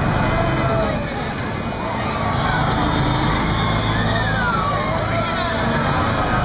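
A Huss Top Spin ride running with a loaded gondola swinging: a steady low rumble from the machinery, with riders' high, wavering voices and screams carrying over it throughout.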